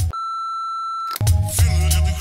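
A single steady electronic beep, one high tone held for about a second. Electronic music with a heavy bass then starts up.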